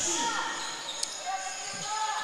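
Live basketball play on a hardwood gym court: the ball bouncing once sharply about a second in, with faint voices in the hall.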